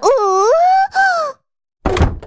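A cartoon character's wordless, whining moan in two parts, its pitch dipping and then rising, stopping about a second and a half in.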